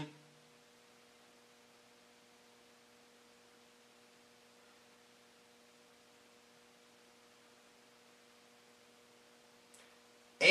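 Near silence with a faint steady electrical hum.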